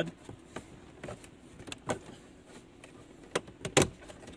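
Hands working a plastic dashboard trim strip loose from its clips: a few scattered light clicks and knocks, the loudest near the end.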